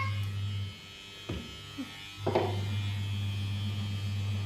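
A low, steady hum that cuts out under a second in and comes back about a second and a half later, with two brief knocks about a second apart.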